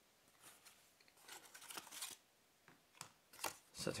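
Faint rustling and handling of a thick kraft-paper wrapper as a cork card wallet is slid out of it, in a few short scattered bursts.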